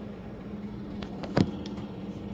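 Handling noise as the recording phone is moved: a few light clicks and one sharp knock about one and a half seconds in, over a steady low hum.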